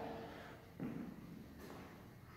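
Quiet room tone with a faint steady low hum, and one soft brief sound just under a second in.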